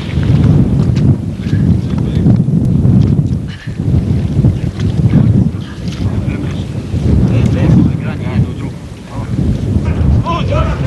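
Wind buffeting the microphone in a loud, uneven low rumble, over water splashing as a net full of fish is hauled against the side of a boat. Faint voices call now and then.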